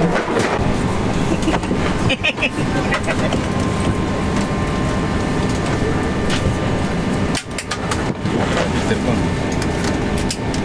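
Steady airliner cabin hum with passengers chatting in the background.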